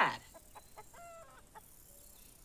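A hen clucking faintly, a few short notes in quick succession, just after a voice trails off.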